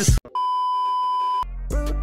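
A single steady electronic beep, one high pure tone held for about a second, then music with a deep bass comes in.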